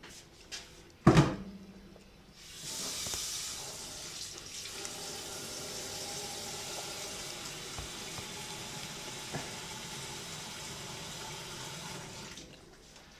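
A loud knock about a second in, then a steady rush of running water that starts a couple of seconds later and cuts off near the end.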